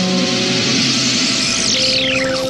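Cartoon storm-wind effect: a steady rushing whoosh of the typhoon over background music, with a falling whistle near the end as the storm dwindles away.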